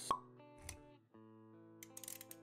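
Intro music with a sharp pop sound effect just after the start, then a held chord of steady tones from about halfway, with a few light clicks near the end.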